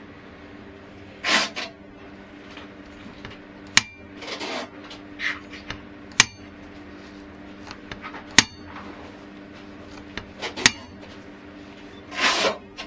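Keihin four-carburettor bank from a Honda CBX750F having its throttle linkage worked by hand: the butterflies snap shut on their return springs with four sharp metallic clacks that ring briefly, about two seconds apart. Softer handling noises from the gloved hand come in between.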